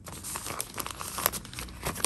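A clear plastic zip bag and thin paper gift bags crinkling as they are handled, a dense run of small crackles.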